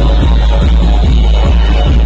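Loud electronic dance music from a DJ sound system, with a heavy, booming bass beat about two and a half times a second.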